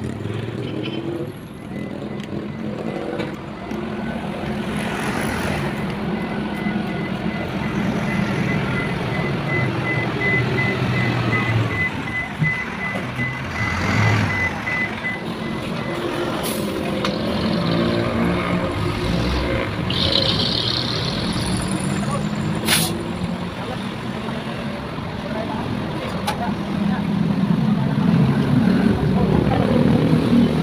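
A heavy truck's diesel engine running amid passing road traffic, with a rapid electronic beeping at one steady pitch for about ten seconds starting around six seconds in.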